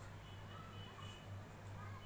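Wooden spatula quietly stirring a thick potato and drumstick curry in a steel pan on an induction cooktop, over a steady low hum.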